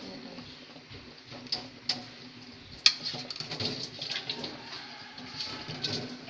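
A ladle knocking and scraping against a large aluminium pan of soup as it is stirred: a few sharp clinks, the loudest about three seconds in, then a run of lighter clicks.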